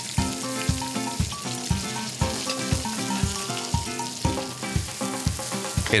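A fish fillet sizzling as it browns in hot oil in a frying pan, under background music with a steady beat about twice a second.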